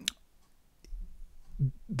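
A short, sharp click just after the start, then a fainter tick a little before the one-second mark, in an otherwise quiet pause.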